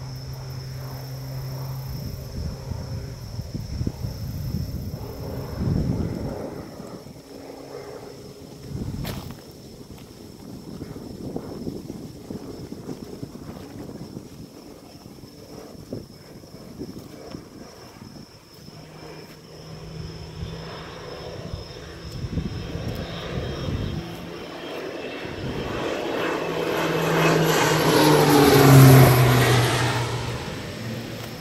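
Crop-dusting airplane's propeller engine droning at a distance, then growing much louder as it passes low overhead near the end, its pitch falling as it goes by.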